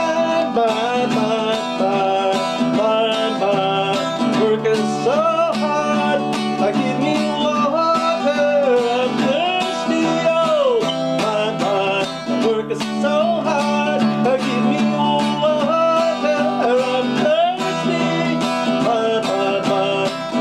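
A man singing while strumming an acoustic guitar in a steady rhythm.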